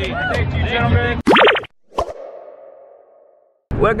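Crowd chatter cuts off abruptly, followed by an edited cartoon-style sound effect: a quick burst of rising boing-like sweeps, then a sharp pop whose ringing tail fades away over about a second and a half.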